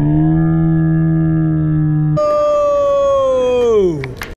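A long held electronic tone, low and steady, jumps to a higher pitch about halfway through. Near the end it bends sharply downward, like a tape slowing to a stop.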